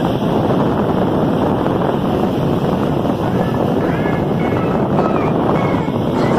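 Steady rushing of surf breaking on a sand beach, mixed with wind buffeting the microphone.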